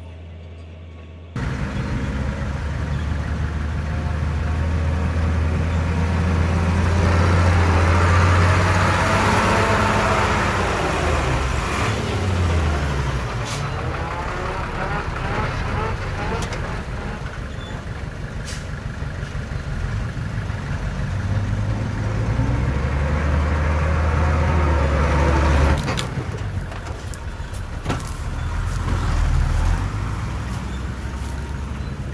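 Heavy diesel engines of earthmoving machinery running, the engine note rising and falling as they work under load, with a few sharp knocks near the end.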